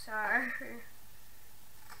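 A person's voice speaking briefly, then steady room hiss with no clear chopping sounds.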